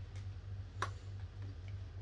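A single sharp click a little before the middle, with a fainter tick near the start, as a button on the jump starter's panel is pressed. A low hum runs underneath.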